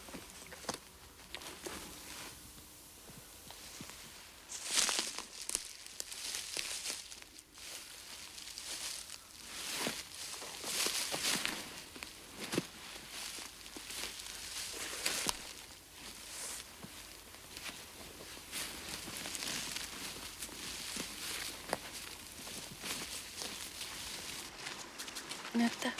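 Irregular rustling and crackling, with louder swishes about five, ten to twelve and fifteen seconds in.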